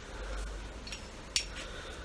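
Quiet handling noise as a small cast metal figure is taken out of a plastic carrier bag, with one sharp click about two-thirds of the way through, over a low steady hum.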